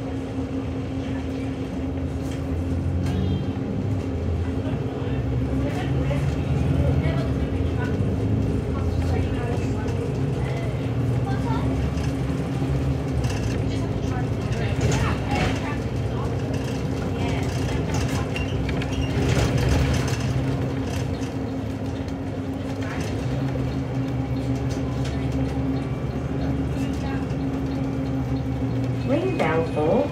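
Inside a city bus under way: the drivetrain's low rumble with a steady hum, swelling as the bus pulls away and again later, and a few brief rattles of the cabin fittings.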